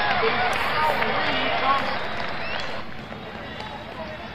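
A crowd of many voices shouting and calling over each other, dying down about three seconds in.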